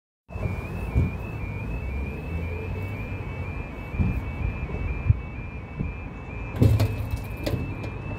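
Level crossing warning alarm sounding a rapid two-tone warble, signalling that a train is approaching and the barriers are about to come down. Road traffic rumbles underneath, with a few knocks and a louder clatter near the end.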